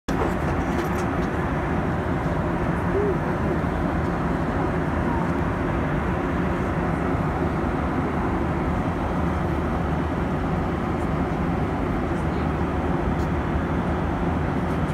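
Jet airliner cabin noise at cruise altitude: the steady, low rush of engines and airflow heard from inside the cabin.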